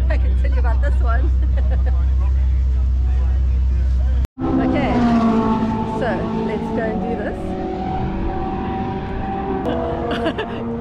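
Ferrari sports car engine idling: a low rumble, then after a brief dropout about four seconds in, a steady hum with several pitches that shifts slightly near the end. Voices chatter underneath.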